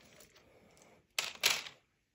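Small plastic animal game pieces clicking together as they are picked up by hand, two sharp clicks about a quarter second apart a little past the middle.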